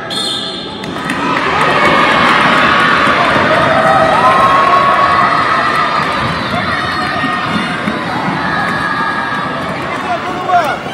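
Crowd of spectators cheering, with children shouting, in a large indoor sports hall during a roller-skating race; the cheering swells about a second in and stays loud.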